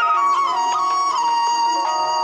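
Instrumental song intro led by a Chinese bamboo flute (dizi) playing a slow melody, sliding down in pitch just after the start, over sustained backing notes.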